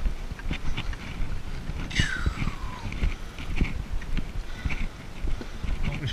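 Footsteps of a person walking across grass and a gravel path, an irregular run of soft low steps. About two seconds in, a single high call falls steeply in pitch.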